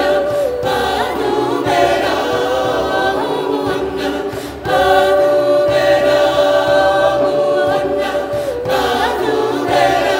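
Mixed choir of men's and women's voices singing a cappella in harmony, holding long notes. One phrase fades about four and a half seconds in and the next starts at once.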